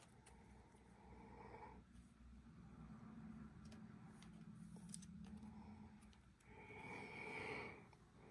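Near silence, with a person's faint breathing close to the microphone.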